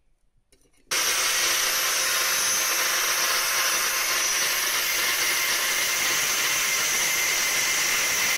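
Electric angle grinder running with its disc against a square steel tube: a loud, steady hiss of metal grinding with a thin high whine in it. It starts suddenly about a second in.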